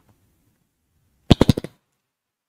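A quick run of five or six sharp knocks in under half a second, about a second and a third in.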